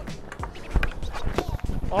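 Hockey stick handling and shooting a puck on ice, heard as a series of sharp knocks with the loudest a little under a second in. Background music plays underneath.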